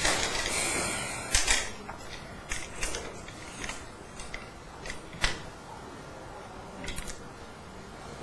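Handling noise from a camera being picked up and repositioned: rustling, then scattered clicks and knocks, the sharpest about a second and a half in and again about five seconds in.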